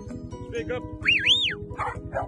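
Working sheepdog barking as it runs up, with a high shepherd's whistle that rises and falls twice about a second in.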